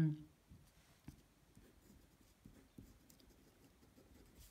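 A uni-ball Air rollerball pen writing a word on paper: faint, irregular scratches and taps of the tip as the letters are formed.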